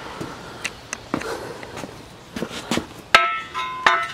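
Light knocks and footsteps, then about three seconds in a sharp metal clank that rings for most of a second, with a second clank near the end: the steel upright of a Pittsburgh engine stand being set down onto a steel-tube frame.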